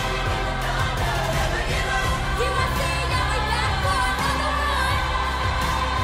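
Youth choir singing with a loud pop backing track that carries a heavy, steady bass.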